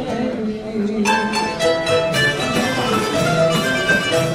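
A live acoustic ensemble plays. A low note is held at first, then about a second in a run of plucked string notes comes in over a cello.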